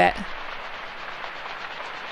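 A rain sound sample in a deep house track, playing as a steady hiss of rain through an Auto Filter with an LFO, used as a white-noise lift into the next section.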